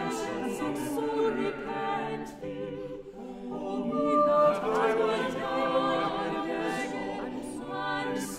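Small unaccompanied vocal ensemble singing an English madrigal, several voice parts interweaving. The voices dip about three seconds in, then swell again.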